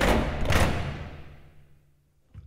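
Edited-in transition sound effect for a countdown graphic: a sudden heavy hit, a second surge about half a second later, then a fade over nearly two seconds, ending on a faint low hum.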